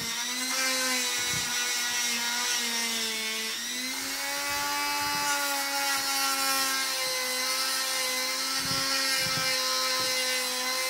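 Corded Dremel rotary tool running steadily as it grinds a dog's nails, a constant high whine. About three and a half seconds in its pitch sags briefly, then picks up slightly higher and slowly settles.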